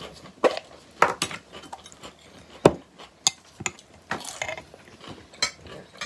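Metal spoon clinking and scraping against a glass jar while scooping out red caviar, in a string of separate sharp taps and clicks.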